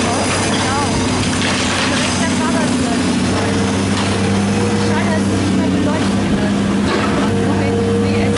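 Long-reach demolition excavator running with a steady engine drone while its grab tears into a brick building, with a couple of bursts of crunching, falling debris.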